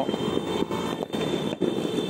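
Motorbike engines running noisily along the street during New Year's Eve celebrations, with a few sharp cracks.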